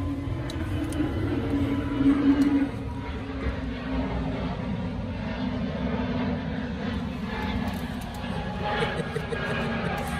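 Steady low rumble of heavy diesel truck engines running, with a wavering drone in it.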